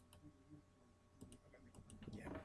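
A few faint computer mouse clicks against near silence, a couple near the start and a small cluster in the second half.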